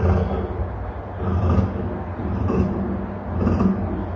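Tailoring scissors cutting a curve through two stacked layers of cotton sleeve fabric: a crisp snip about once a second, four in all, over a low rumble.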